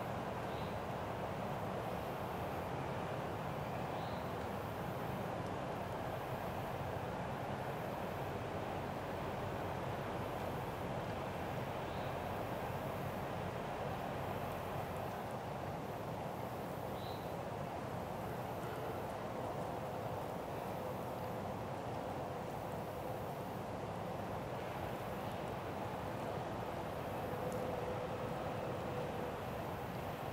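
Steady outdoor background noise: an even, constant hiss in the woods, with a few faint, short, high chirps scattered through it.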